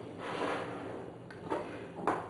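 Faint handling sounds of a small metal grater being lifted in a glass bowl, with a light knock about one and a half seconds in.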